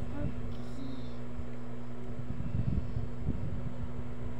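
Steady low background hum with an uneven low rumble that swells about two and a half to three seconds in. A brief faint voice sounds just after the start.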